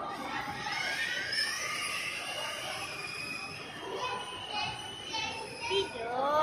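Children's voices and general chatter, high-pitched and fairly faint, over the background hum of a busy mall.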